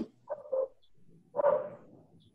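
A dog whining: two short high-pitched whines about a second apart, the first broken into two quick pulses.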